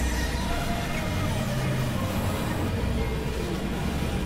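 Experimental synthesizer noise piece: a dense, steady low drone with short, scattered tones and a few falling glides above it, and no beat.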